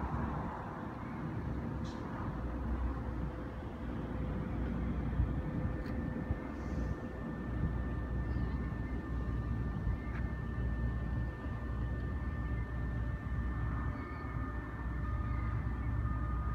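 Steady low rumble of distant engines, with faint steady whining tones coming in a few seconds in.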